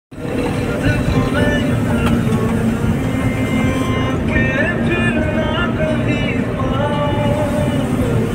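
Steady road and engine noise of a moving vehicle heard from inside, with a song playing over it, its sung melody wavering and holding notes.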